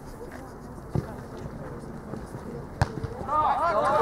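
Football match play: a single thump about a second in and a sharp knock just before three seconds, likely the ball being struck. Then several players start shouting at once, much louder.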